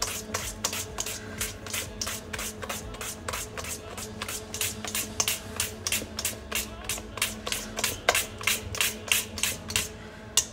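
Small spiral whisk working through cream in a stainless steel bowl, folding whipped cream into the thickened gelatine cream base. Its wire scrapes and taps the metal in a quick, even rhythm of about four to five strokes a second.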